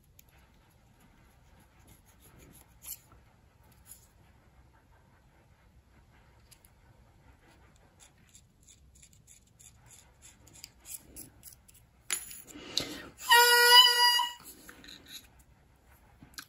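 Faint scraping strokes of a reed knife on the cane of an oboe reed's tip. Near the end comes a breathy blow, then a short, loud crow from the reed played on its own, whose pitch has dropped.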